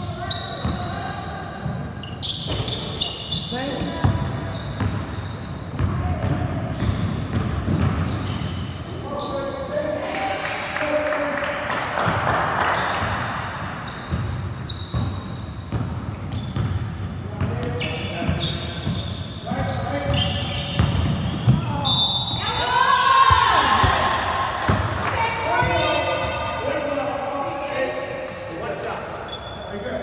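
Basketball bouncing on a hardwood gym floor during live play, with players' voices calling out, echoing in a large indoor hall.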